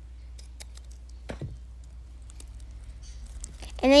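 Scissors snipping the excess off a folded paper strip: a few faint, separate clicks and snips over a low steady hum.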